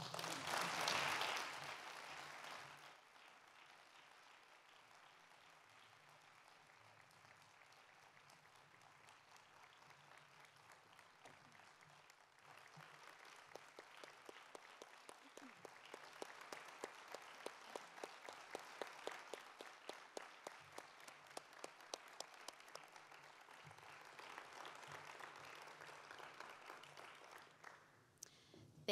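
Audience applauding at the end of a speech. A full burst of applause fades within about three seconds. A second, thinner round of clapping with separate claps rises about twelve seconds in and dies away near the end.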